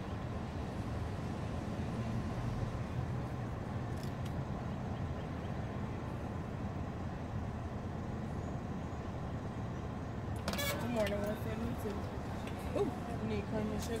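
Steady low rumble of a car engine running, heard from inside the car's cabin. A voice speaks over it in the last few seconds.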